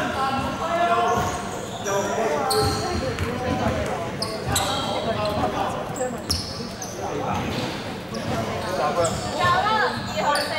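Basketball game on a hardwood court: the ball bouncing on the floor, short high sneaker squeaks and players' voices calling out, all echoing in a large sports hall.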